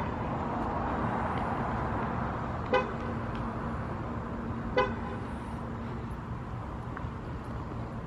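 Two short horn toots about two seconds apart over steady outdoor traffic noise and a low, even hum.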